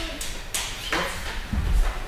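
Scuffs and footfalls of a boy getting up from kneeling and stepping across judo tatami mats: a few short scuffing knocks, then a heavy low thud a little past halfway, the loudest sound.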